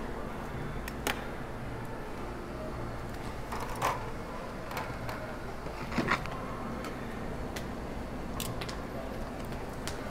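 A steady low kitchen hum with a few short metallic clicks and clinks scattered through it, such as metal tongs tapping a stainless steel pot.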